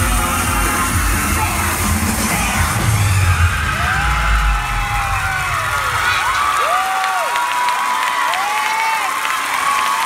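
Pop dance music with a heavy bass beat that stops about halfway through, while a crowd cheers with long high-pitched screams that rise and fall.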